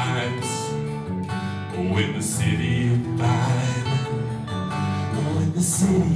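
Live song: a man singing with a strummed acoustic guitar.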